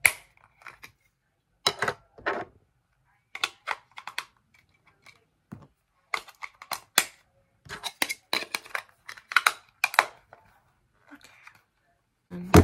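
Sharp plastic clicks and snaps in irregular clusters from a TV remote being handled as batteries are fitted and its battery cover slid into place.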